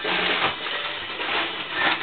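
Sneakers being handled close to the microphone: irregular rustling and scraping with small knocks.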